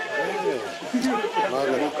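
Speech: voices talking, at times overlapping, with no other sound standing out.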